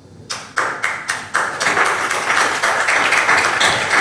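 A group of people applauding: a few single claps, then thickening into dense, steady clapping about a second and a half in.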